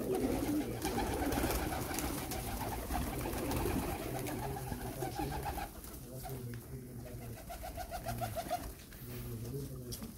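A flock of Shirazi and other fancy pigeons cooing together, with wings flapping now and then as birds take off.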